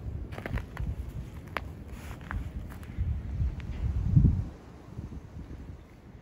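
Wind rumbling on the microphone, with a few scattered light clicks and one dull thump about four seconds in.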